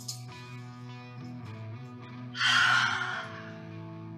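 One long audible exhale through the mouth, about two and a half seconds in, lasting under a second. Underneath, slow background music of sustained guitar notes plays steadily.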